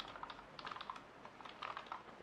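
Faint, irregular keystrokes on a computer keyboard as a terminal command is typed.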